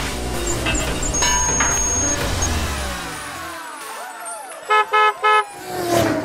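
Cartoon car sound effects over an intro sting. Vehicles sweep past, falling in pitch, for the first few seconds, then a quick run of short car-horn toots comes about five seconds in.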